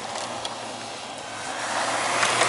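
Gravel-track race car's engine running steadily, with loose gravel crunching under the tyres. It grows louder in the last half second as the car comes closer.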